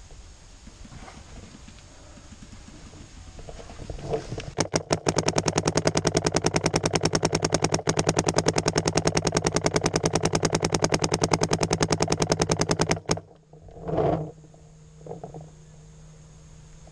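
Paintball marker firing a long, rapid, evenly spaced stream of shots, roughly ten a second, for about eight seconds, then stopping suddenly. A loud thump follows about a second later and a smaller one after it.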